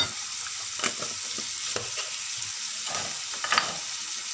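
Minced meat and onion frying in a pan with a steady sizzle. A few sharp clicks and knocks of utensils against the pan, the loudest right at the start and about three and a half seconds in.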